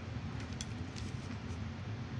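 A few light clicks and taps of small hand-handling as a wooden skewer and clay are moved about on a clay work board, over a steady low hum.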